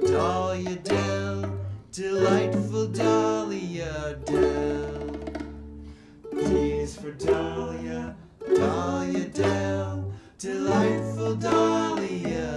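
A small band playing a song: strummed ukuleles and an electric bass guitar, with a drum kit and two men singing. The bass holds low notes that change about once a second.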